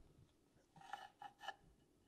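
Near silence: room tone, with a few faint short scrapes about a second in.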